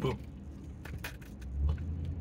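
Steady low hum of a car's engine heard inside the cabin, swelling a little near the end.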